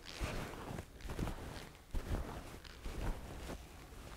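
Soft, irregular thumps and rustling, about half a dozen in a few seconds: people's feet and clothing shifting as they hold a forward-bend stretch.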